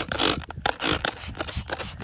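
Hand-held trigger spray bottle squirted repeatedly, a quick run of short sprays of soapy water onto wood mulch, a few each second.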